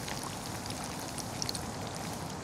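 Hot vegetable oil in a cast iron Dutch oven bubbling and sizzling steadily around a frying battered perch fillet, with a few faint pops.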